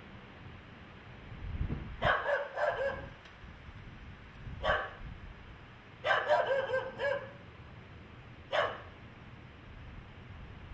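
A dog barking over and over in bursts: a quick run of barks about two seconds in, a single bark near the middle, another quick run of barks a little later, and one last single bark near the end.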